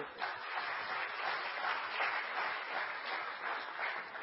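A congregation applauding: many hands clapping in an even, dense patter.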